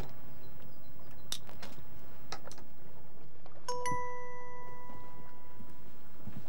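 A few light clicks and taps, then a single bright bell-like chime struck about two-thirds of the way in, ringing on and slowly fading.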